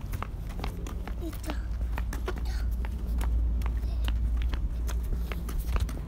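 Footsteps of several people walking on brick paving, an irregular patter of short clicks, over a low steady rumble.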